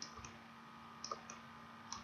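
Faint computer mouse button clicks, coming in quick pairs about a second apart, over a steady low hum.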